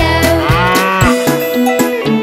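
A cartoon cow's moo: one call that rises and falls in the first second, over instrumental children's music with a steady beat.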